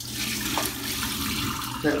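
Starchy rinse water poured from a bowl of grated potatoes through a metal colander into a sink, a steady splashing that starts abruptly and stops near the end. This is the milky, starchy water being drained off the grated potatoes.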